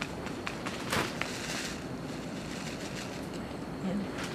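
A paper seed packet lightly tapped with a finger to shake seeds out, a few soft ticks in the first second or so, over a steady rushing background noise.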